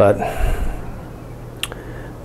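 A man's voice says one word, then pauses with a soft breath. About a second and a half in there is one short, sharp click.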